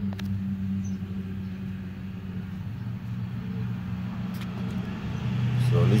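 A steady low motor hum, with a couple of faint ticks about four seconds in.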